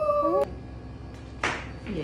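A woman's voice in a high, held 'ooh'-like cry that cuts off suddenly about half a second in, followed about a second later by a short breathy puff of air.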